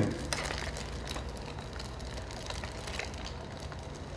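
Hanging spoke-wheel gyroscope spinning on its axle as it precesses on its string: a low steady whir with a few faint ticks.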